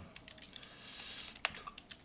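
Typing on a computer keyboard: a quick run of light keystrokes spelling out a web address, with a soft hiss in the middle and one sharper, louder key click about one and a half seconds in.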